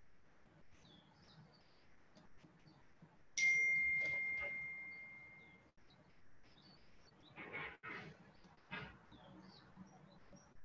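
A single clear ding, one bell-like tone that strikes suddenly and fades away over about two seconds. A few short rustling knocks follow near the end.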